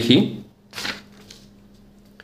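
A spoken word trails off, then a short scratchy rustle of a marker and hand moving on a paper sheet, with a faint steady hum behind.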